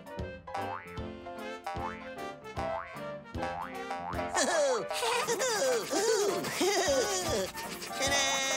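Playful children's background music with bouncy plucked notes and springy 'boing' effects. About four seconds in, wobbly sliding cartoon squeaks and a sparkly high shimmer join the music.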